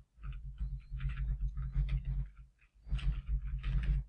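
Typing on a computer keyboard: quick key clicks in two runs with a short pause about two and a half seconds in, over a low steady hum.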